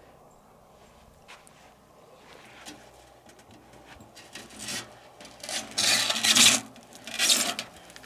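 A heavy bathtub being tipped and shifted over sand, scraping against the ground in three rough rasps in the second half; the middle one is the longest and loudest.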